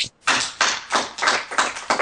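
A quick run of hand claps, about four or five a second, with no speech over them.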